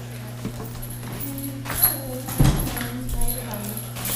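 Courtroom room sound: a steady low hum with faint voices in the background and a couple of soft thumps about two seconds in.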